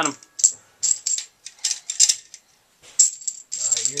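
Plastic Connect Four checkers clicking and clattering as they are handled and dropped into the grid: a string of separate sharp clicks, with a short lull in the middle.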